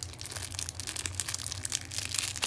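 Clear plastic packaging crinkling as it is handled, a dense run of crackles.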